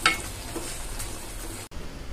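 Squid masala gravy sizzling in a kadai, with a short wooden-spatula stirring stroke against the pan at the start; the steady sizzle cuts off suddenly just before the end.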